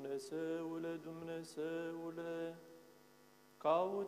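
A man's voice chanting an Orthodox liturgical psalm verse in long held notes. About two-thirds of the way through there is a short pause, and near the end a new phrase begins with a rising note.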